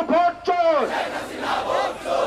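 A street crowd shouting political slogans in unison. One loud voice rises and falls above the crowd in the first second, then many voices shout together.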